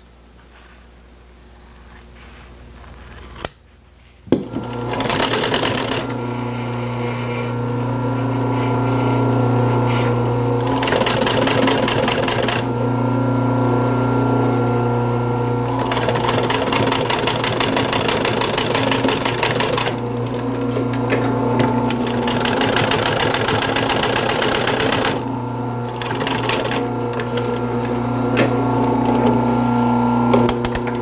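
Industrial sewing machine stitching a seam through upholstery vinyl and fabric: it starts about four seconds in and runs in several spurts of a few seconds each, with a steady motor hum carrying on between them.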